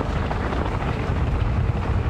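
Mountain bike riding noise picked up by a bike-mounted camera: a steady low rumble of wind on the microphone with tyres running over a gravel trail.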